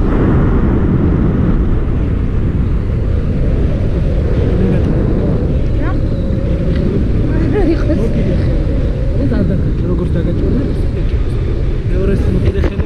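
Airflow buffeting the camera microphone during a paraglider flight: a loud, steady low rumble of wind noise.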